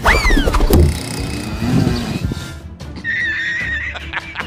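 A horse whinnying: one loud, high call at the very start that falls steeply in pitch over about half a second, over background music. Near the end a wavering high tone comes in.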